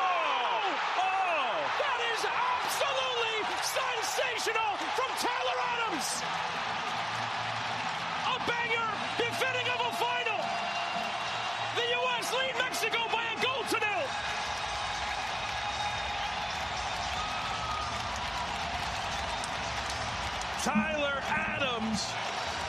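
Stadium crowd noise from a televised soccer match: a steady crowd din with individual voices rising and falling above it, and a broadcast commentator speaking at times.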